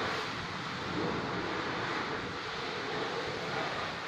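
A pressure washer running steadily in the background, a constant even hiss with no breaks.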